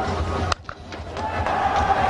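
Steady background noise of a televised cricket match, broken off abruptly about half a second in by a sharp click and sudden drop, as at a cut between highlight clips, then rising back to the same level.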